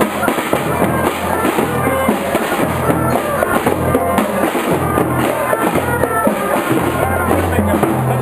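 Parade music with drums beating throughout under held low bass notes that change about once a second, with melody notes above.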